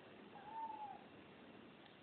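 A cat meowing once, a short faint call that rises and falls in pitch, about half a second in.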